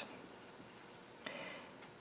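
Faint scratching of a pencil writing on a paper worksheet, with one short stretch of strokes just over a second in.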